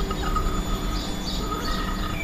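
Birds chirping in short, thin calls over a steady low rumble of background noise.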